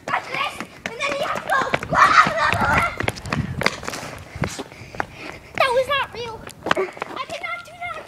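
Children's voices shouting and calling out, with short knocks and scuffs of feet running on asphalt.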